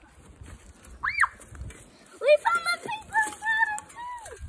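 A young girl's voice: a short high squeal that rises and falls about a second in, then sing-song voice sounds with held notes through the second half.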